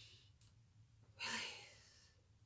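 A person's deliberate, audible exhale through pursed lips, a breathy sigh about a second in that fades out, as part of a meditation breathing exercise.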